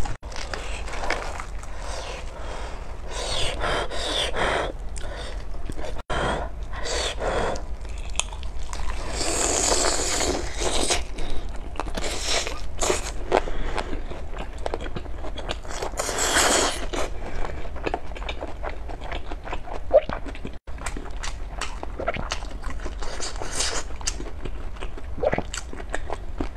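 Close-up eating sounds of a large fried chicken: crunchy bites and chewing, with many short crunches and longer noisy stretches about ten and sixteen seconds in.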